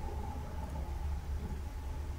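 A steady low electrical hum with faint hiss and a faint, thin, steady tone above it. This is the recording's background noise, with no distinct event.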